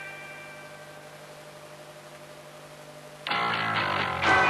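Rock band instrumental: a held guitar chord rings and slowly fades over a low steady note. The full band comes back in suddenly and loudly a little over three seconds in.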